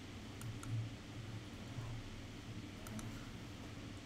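A few faint, scattered clicks of a computer mouse, over a low steady hum.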